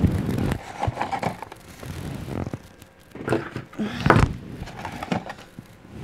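Handling noise of small craft supplies: irregular rustling, scraping and light knocks as a paperclip, thread and crimp bead are handled over a table, with a louder cluster of rustles a little past the middle.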